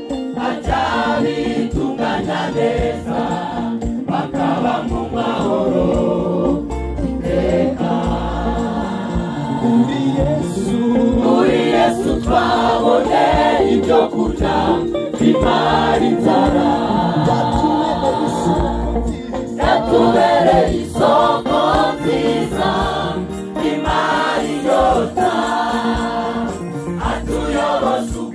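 A large mixed choir of women and men singing a Rwandan gospel song together, loud and sustained.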